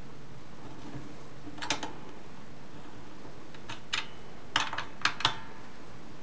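Allen wrench clicking against a bolt and a black steel futon hinge while the bolt is tightened by hand: several small metallic clicks, mostly in pairs, over a steady hiss.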